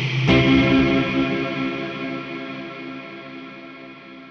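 Electric guitar, a Gibson Les Paul, playing through the Meris Polymoon delay pedal with its Dimension control smearing the repeats into a reverb-like wash. A chord is struck about a third of a second in and left to ring, fading steadily away.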